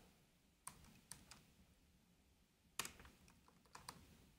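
Faint computer keyboard keystrokes: a handful of irregular taps, the loudest a little before three seconds in.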